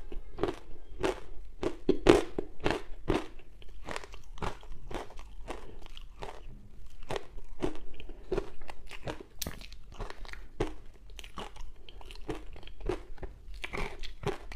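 Close-miked crunching and chewing of dry matcha-powdered ice: a steady run of crisp crunches, about two to three a second.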